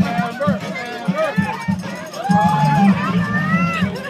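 Several people's voices talking and calling out over one another, with a few longer drawn-out calls.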